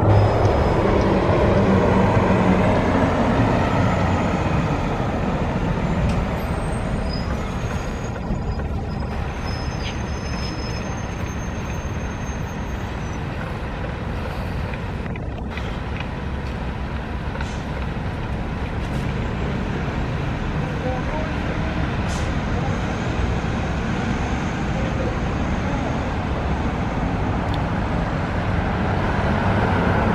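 Street traffic noise: a steady rumble of passing vehicles, louder at the start and again near the end.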